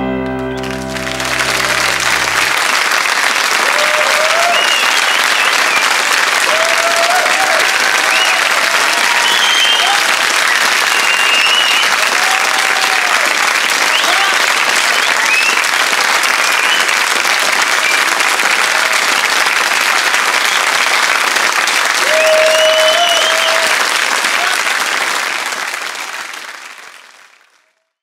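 The last piano chord of the song rings out and dies away in the first couple of seconds as a studio audience breaks into steady applause, with scattered cheers and whoops. The applause fades out near the end.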